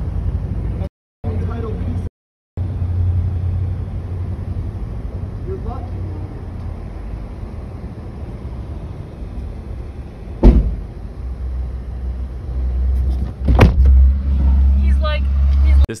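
Low, steady rumble of a car idling, heard from inside the cabin, with a sharp knock about ten seconds in and another a few seconds later. The sound cuts out twice briefly near the start.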